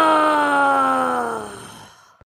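A woman's voice giving one long groan that slides down in pitch and fades out near the end, a playful dinosaur noise.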